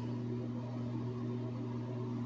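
A steady low hum with a faint hiss underneath, unchanging throughout.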